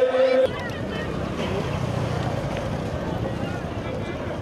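A burst of crowd shouting that cuts off abruptly about half a second in, giving way to steady outdoor street noise: wind buffeting the microphone, with faint distant crowd voices.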